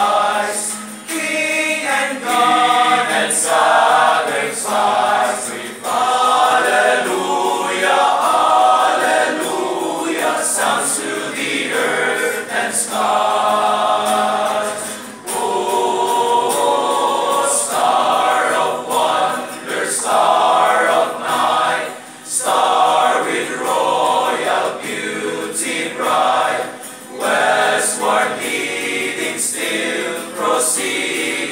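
A male choir of young men singing a Christmas carol together, in sustained sung phrases with short breaks for breath between them.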